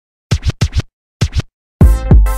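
DJ record scratching in short groups of quick strokes separated by silence. A loud electronic hip-hop beat drops in just before the end.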